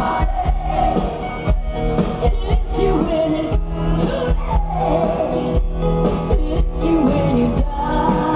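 Live rock band playing loudly through a large PA system, drums keeping a steady beat under a wavering melodic lead line.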